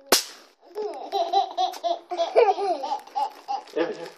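A bang snap (snap rock) cracks once against concrete right at the start, then a baby laughs in a string of short, giggly bursts for about three seconds.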